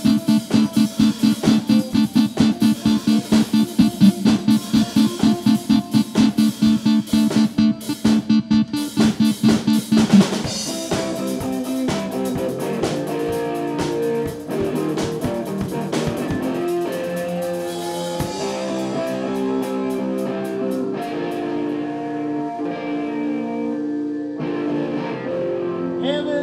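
Improvised instrumental rock jam on drum kit and electric guitar: a fast, even pounding beat of about three hits a second. About ten seconds in, a final crash ends the beat and the drums drop out, leaving sustained, overlapping electric guitar notes ringing on.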